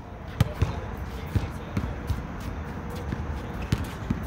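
Basketballs bouncing on an outdoor hard court: about eight sharp, unevenly spaced thumps.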